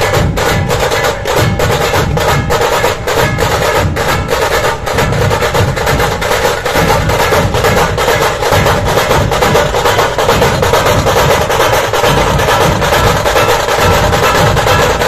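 Puneri dhol-tasha ensemble playing: many large dhol drums beating a heavy low pulse under fast, sharp tasha strokes, in a loud, unbroken rhythm.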